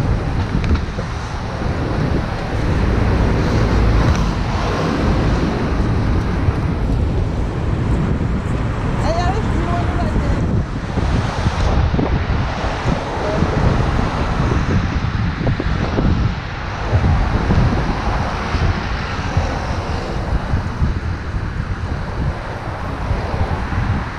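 Wind buffeting the camera microphone, over steady road traffic from cars passing close by.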